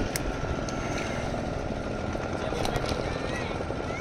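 Motorboat engine running steadily: an even low rumble with a constant high-pitched tone over it.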